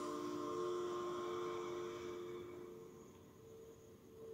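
Faint background drone of several steady held tones that slowly fades away toward near silence.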